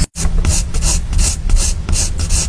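Wooden coloured pencil shading on sketchbook paper: quick repeated scratchy strokes, about three a second, after a brief drop-out at the very start.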